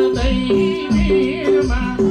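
Nepali folk song played loud: a singer's wavering, ornamented voice over sustained instrument notes, with a low drum beat about twice a second.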